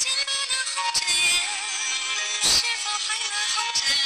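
A homemade battery-powered transistor FM radio plays a music broadcast with a singing voice through its small loudspeaker. About halfway through there is one brief burst of noise.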